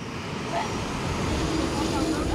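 Boeing 737 airliner's jet engines running as it taxis, a steady rushing noise that grows slightly louder, with a faint steady tone in the second half.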